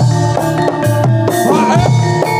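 Loud live Javanese kuda kepang (jaranan) dance music: a steady drum rhythm under ringing, pitched metallic percussion.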